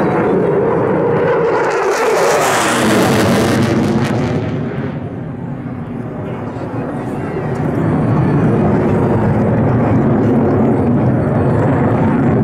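Jet noise from USAF Thunderbirds F-16 Fighting Falcons splitting apart in a bomb burst overhead: a steady, dense noise with a hissing surge about two to four seconds in, a brief dip around six seconds, then building up again.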